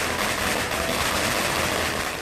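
A string of firecrackers bursting in a rapid, continuous crackle of small explosions.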